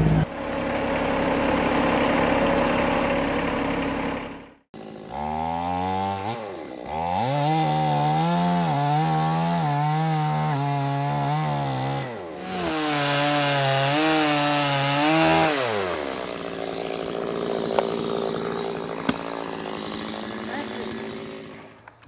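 Gas chainsaw revving up and cutting into a hard old ash stump, its pitch holding steady under load. It eases off briefly partway through, cuts again, then drops back. Before that comes a few seconds of steady engine-like noise and a short silence.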